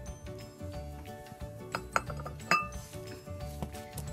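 Background music, with a few sharp clinks about halfway through from a plate being set down on stone paving.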